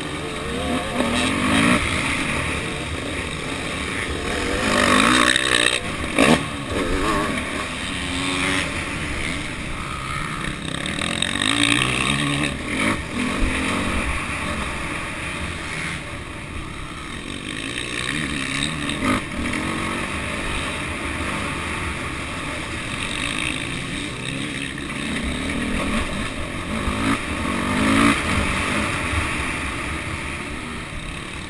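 Dirt bike engine heard from on board, revving up and down over and over as the rider accelerates and shifts, with rough buffeting on the microphone and a sharp knock about six seconds in.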